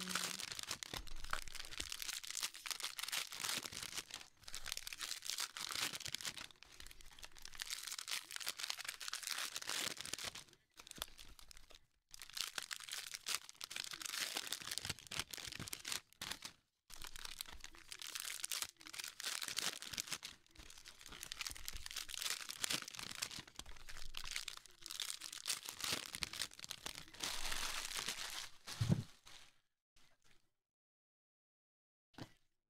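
Foil wrappers of Panini Mosaic football card packs crinkling and tearing as the packs are handled and ripped open, almost without pause and with a few short breaks. A short low thump near the end.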